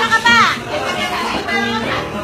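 Excited high-pitched voices shouting, with a shout that falls in pitch in the first half-second, over steady background music.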